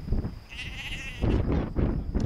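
A sheep bleats once, a short wavering call about half a second in, followed by low rumbling noise.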